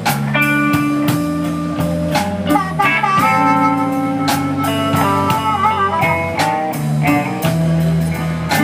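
Live blues band playing without vocals: a guitar leads with held notes that bend and waver, over bass and a drum kit keeping a steady beat.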